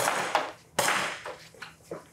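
Shots from a blue training pistol fired in a room: two sharp reports just under a second apart, each trailing off in a short echo, then two fainter taps near the end.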